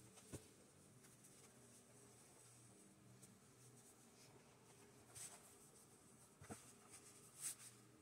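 Quiet handling of fabric being folded and smoothed by hand on a table: a few faint brushing swishes, the loudest near the end, and a couple of soft knocks.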